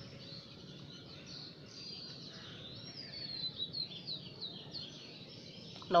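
Birds chirping in the background, a series of short high chirps over faint, steady room noise.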